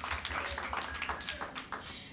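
Audience clapping in applause, a dense patter of handclaps that thins out near the end.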